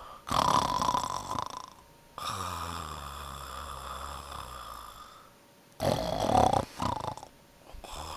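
A sleeping Pomeranian snoring, in a slow breathing rhythm: louder snorts about half a second in and again about six seconds in, with a longer, lower snore between them.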